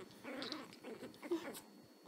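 Chihuahua puppy growling faintly in a few short spells, with scratching and rustling as it digs and tussles in a fleece bed.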